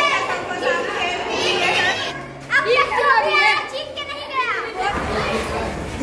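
Many children's voices chattering and calling out at once, overlapping. A low rumble comes in near the end.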